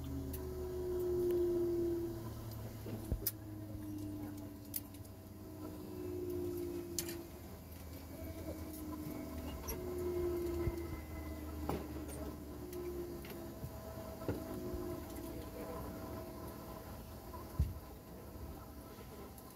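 Steady low hum inside a parked airliner's cabin, with a wavering tone that swells every second or two. Scattered sharp clicks and knocks from passengers moving about and handling belongings sound over it.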